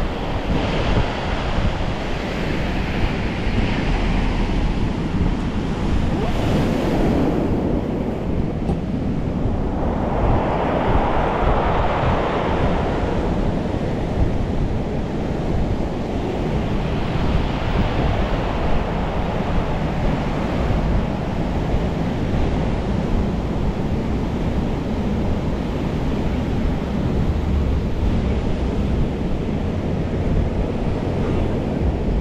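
Ocean surf rushing in against a rock seawall at high tide, rising in several surges a few seconds apart, over a steady low rumble of wind on the microphone of a moving bike.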